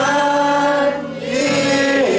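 A congregation singing a Chinese worship song together, led by a man's voice, with acoustic guitar accompaniment. Long held notes, with a short dip a little past halfway before the next note.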